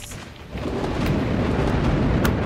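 Low rumbling noise with hiss that rises about half a second in and then holds steady.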